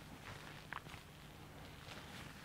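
Faint clinks and rustles of altar vessels being handled, with one brief ringing clink just under a second in, over a faint low hum.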